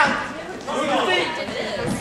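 Several voices chattering and calling out, one calling "come on", in a gym.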